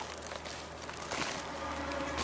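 Faint rustling and crinkling of hands handling moist worm bedding over a woven plastic sack, with a low steady hum underneath.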